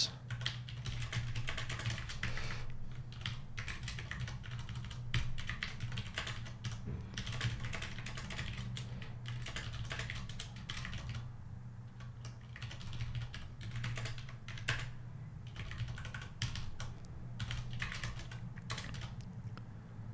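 Typing on a computer keyboard: irregular runs of keystrokes with brief pauses, over a steady low hum.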